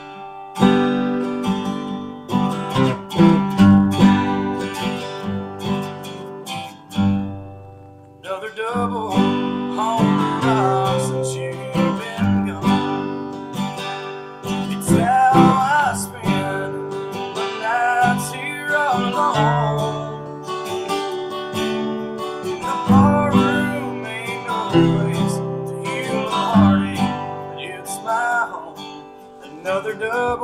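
Steel-string acoustic guitar strummed in open chords, starting on G. After a short break about eight seconds in, a man's voice sings over the strumming.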